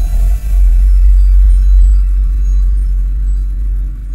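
Intro title soundtrack: a loud, sustained deep bass rumble with a faint hiss above it.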